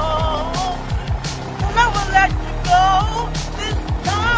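Synth-pop music playing with a male voice singing over it and a steady drum-machine beat, about two beats a second.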